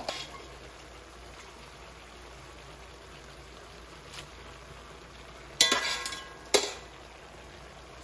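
A wok of soy-braised chicken and vegetables simmers with a steady faint hiss as glass noodles are stirred in with a wooden spoon. Past the middle there are two loud, sharp clatters about a second apart.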